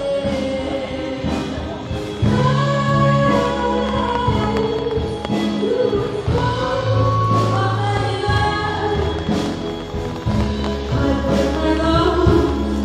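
Music with a group of voices singing in harmony over bass and a steady beat.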